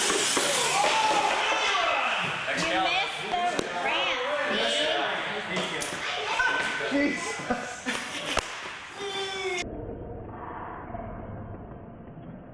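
Radio-controlled monster trucks racing across a concrete floor, a dense rushing noise, mixed with people's voices calling out and a sharp crack about eight seconds in. About ten seconds in, the sound abruptly turns quieter and muffled.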